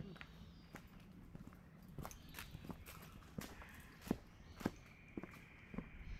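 Footsteps of a hiker walking on a dirt forest track, irregular steps about two a second, sharper and louder in the second half. A steady high-pitched whine comes in near the end.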